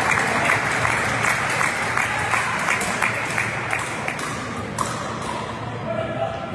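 Spectators clapping, a dense patter of handclaps that gradually dies away.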